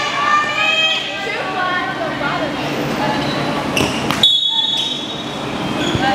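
Players' and spectators' voices echoing in a gymnasium, with a few sharp thumps of a volleyball on the court floor about four seconds in, followed by a thin steady high tone.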